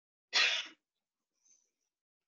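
A single short, sharp burst of breath noise from a person, under half a second long, sneeze-like.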